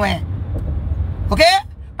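Steady low rumble of a car's interior, with a woman briefly saying "OK" about one and a half seconds in.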